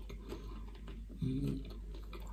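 Quiet, close mouth sounds of a person chewing pizza, with faint scattered clicks. A short voiced hum comes about a second in.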